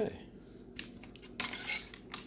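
A few light clicks, then a short crackling rustle of a thin plastic blueberry clamshell being handled and pressed shut.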